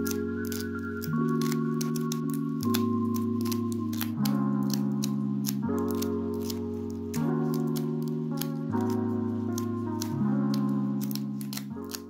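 Background music of sustained chords that change about every second and a half, over crisp, irregular snapping and tearing clicks as the lower leaves are pulled off a pineapple crown.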